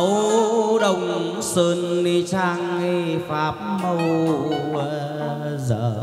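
Chầu văn ritual music: a singer holds long, wavering, sliding notes over the ensemble's lute and percussion, with a few sharp percussive strikes.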